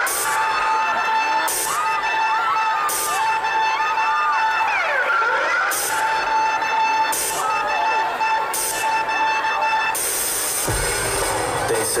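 Arena performance intro over the PA: a steady high synth tone with short sharp hits about every second and a half, under a crowd of fans screaming. A deep bass beat comes in about ten seconds in.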